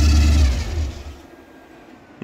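Lifted 1950s American car's engine idling with a low rumble, then switched off about half a second in, running down to quiet within a second.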